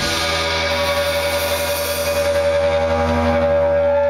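Live rock band with electric guitar and bass guitar through amplifiers, holding one sustained, ringing chord with a single high note held steady over it and no drum beat.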